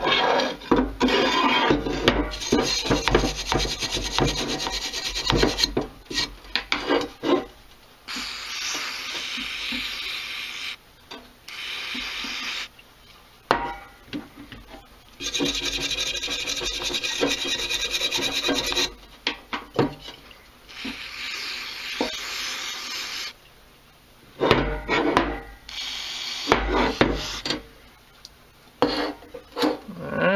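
Stiff brush scrubbing an aluminium two-stroke engine case half in quick rubbing strokes, with long steady hisses of aerosol degreaser being sprayed onto it in between, cleaning oil and grime out of a crack before it is welded.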